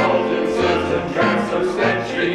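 A men's vocal group singing a polka, accompanied by piano and accordion, over a steady oom-pah bass that changes note about every half second.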